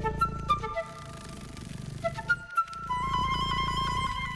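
Documentary score: a flute plays quick runs of short notes over a low, sustained backing, then settles into a long held note about three seconds in.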